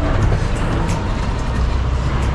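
Steady low engine rumble and road and wind noise from a motorcycle being ridden through traffic, with music playing underneath.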